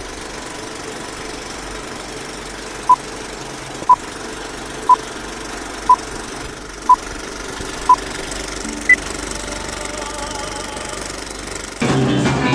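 Film-leader countdown sound effect: a steady film-projector run under six short beeps of one pitch, a second apart, then a single higher beep a second later.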